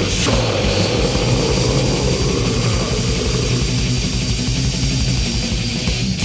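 Grindcore band playing loud, fast, distorted music on guitar, bass and drums.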